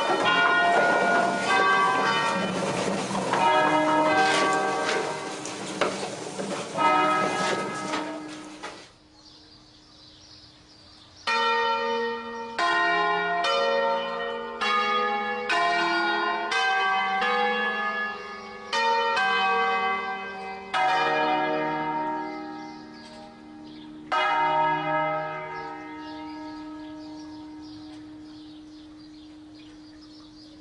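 A concerto of five rope-rung church bells on swinging wheels (largest bell E-flat, cast 1890–1950 by Barigozzi, Ottolina and De Poli) ringing a solemn festive peal: a dense run of overlapping strikes, then after a short break near 9 s a slower run of single strikes a little over half a second apart. The last strike comes near 24 s and is left to hum away.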